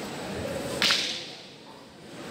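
A single sharp, whip-like crack a little under a second in, made during a martial-arts walking-stick form, ringing briefly in a large hall.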